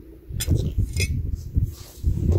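Two sharp clinks of a steel splitting blade striking layered limestone slabs, about half a second apart, over a low rumble.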